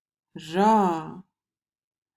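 Speech only: a voice slowly saying the single Swedish syllable "ra", about a second long.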